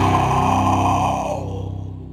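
A heavy metal band's distorted guitar chord sustains and dies away. The upper ringing cuts off about a second and a half in, and a low droning tone lingers as the level falls.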